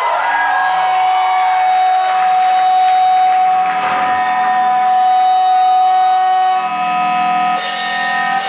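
A live rock band opens a song with long, steady held notes from its electric instruments. The full band, with drums and cymbals, crashes in about seven and a half seconds in.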